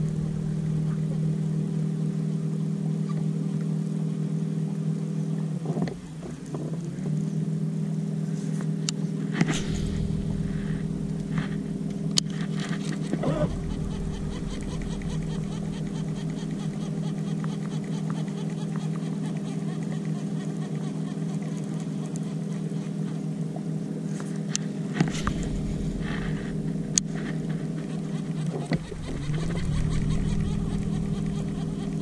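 Bow-mounted electric trolling motor running with a steady hum. It cuts out briefly about six seconds in and again near the end, its pitch sliding back up as it comes back on. A few light clicks and knocks sound over it.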